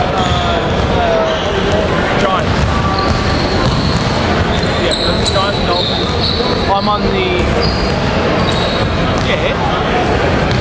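Basketballs bouncing on a hardwood gym floor amid indistinct voices in a large echoing hall, with a few short high squeaks.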